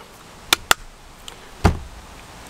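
Two short, sharp clicks in quick succession, then a soft low thump, over a faint steady hiss.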